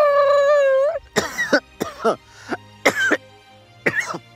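A man's voice holds one long, high 'heee' for about a second, then breaks into a bout of coughing, about five harsh coughs over the next three seconds.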